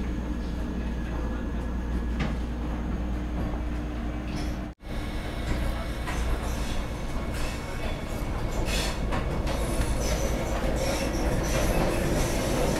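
Vande Bharat Express electric train pulling out of the station, heard from inside the coach: a steady low rumble with wheel and track noise and scattered clicks. It grows slowly louder as the train gathers speed, with a momentary break about five seconds in.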